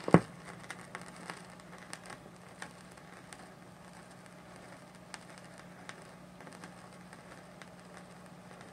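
Stylus set down on a spinning 45 rpm vinyl record with one sharp thump at the start, then the lead-in groove playing: surface hiss with scattered crackles and pops over a steady low hum, before the music starts.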